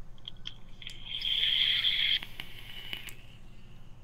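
A draw on a vape: the e-cigarette's atomizer coil firing, a crackling hiss of e-liquid sizzling on the coil as air is pulled through. It builds about a second in, is loudest for about a second, then fades out, with a few faint clicks.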